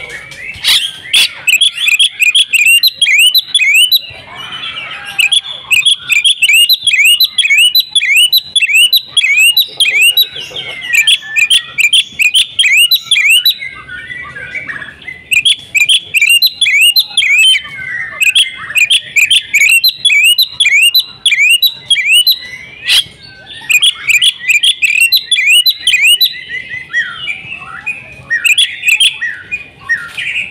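Oriental magpie-robin singing loudly in fast runs of repeated whistled notes, about four a second, broken by short pauses.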